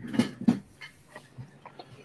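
A man's voice makes two brief, breathy sounds in the first half second, then goes quiet apart from a few faint clicks.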